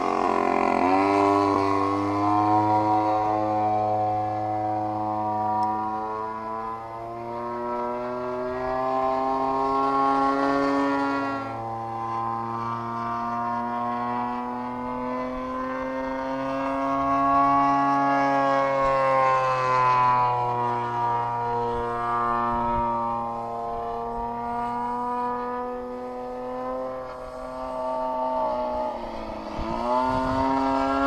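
RCGF 55cc two-stroke gasoline engine of a 30% scale P-51 Mustang RC model in flight. Its steady buzzing note rises and falls with throttle and distance, and drops sharply in pitch as the plane passes close at the start and again near the end.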